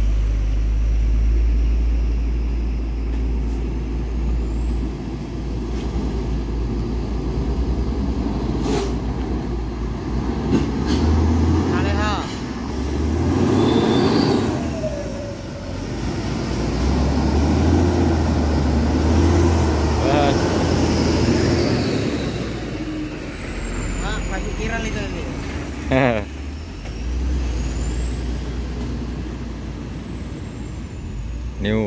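Heavy diesel truck engine, a Hino 500, running at low revs as the truck creeps through a deeply rutted mud road. The engine sound swells and eases as the throttle is worked, with a few short sharp noises in between.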